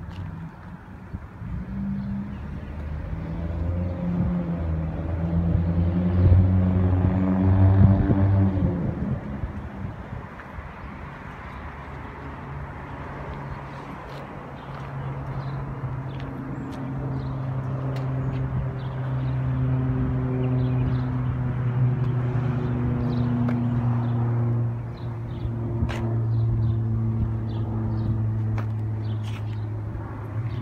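1984 Dodge Daytona Turbo Z's 2.2-litre turbocharged four-cylinder engine running, with a known exhaust leak. It is revved up over several seconds, peaking and dropping back about eight to ten seconds in, then runs on steadily, with a slower, gentler rise in speed in the second half.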